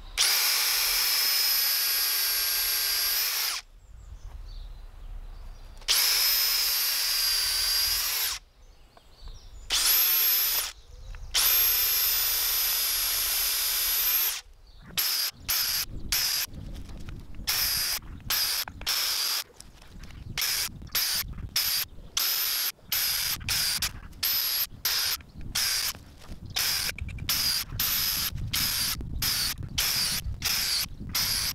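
Cordless drill boring holes into a wooden log: several long runs of the motor's steady whine, each a few seconds, then about halfway through a quick string of short bursts as the trigger is pulsed.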